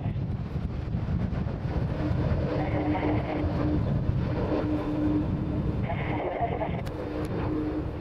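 Twin jet engines of an Airbus A310 (CC-150 Polaris) tanker running as the airliner rolls along the runway close by, a steady heavy rumble with a faint steady hum running through it.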